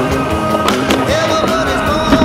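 Music playing over a skateboard trick: two sharp clacks of the board close together, a little less than halfway through.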